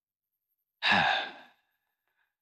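One speaker answering with a single sighed 'haan' ('yes'), breathy, falling in pitch and trailing off.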